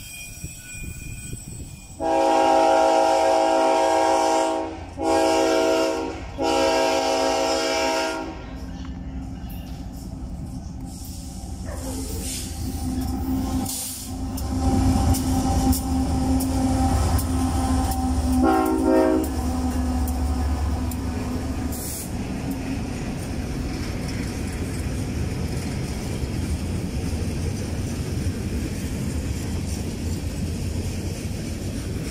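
A diesel locomotive horn sounds three loud blasts, long, short, long. Then KCSM diesel freight locomotives, a GE ES44AC and an EMD SD70ACe, pass close by with their engines running and one more short horn blast, followed by the steady rolling of freight cars.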